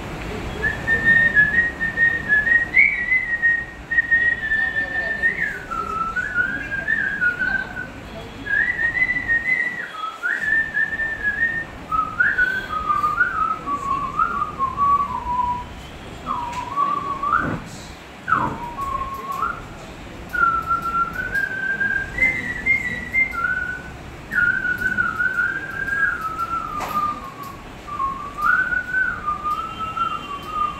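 A man whistling a song melody solo into a handheld microphone: one clear, pure tone gliding up and down in phrases, with short breaks between them.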